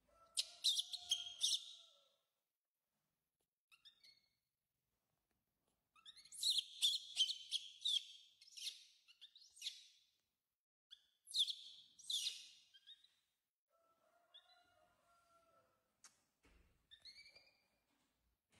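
A baby monkey's high-pitched squealing calls in three loud bouts of rapid chirps, with a longer, lower wavering call near the start and again later, and a few fainter calls near the end.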